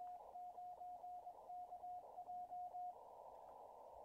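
Elecraft K3 transceiver's CW sidetone, a single steady tone keyed on and off in Morse code, sending the operator's call sign K9KJ, over the radio's faint receiver hiss. The keying stops about three seconds in.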